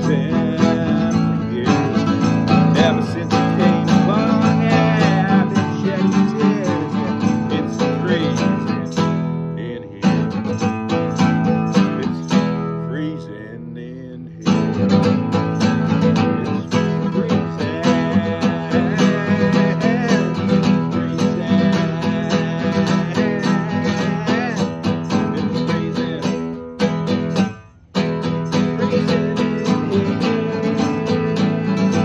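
Alhambra classical guitar strummed and picked in an instrumental break, playing more softly from about ten to fourteen seconds in and stopping briefly near the end before carrying on.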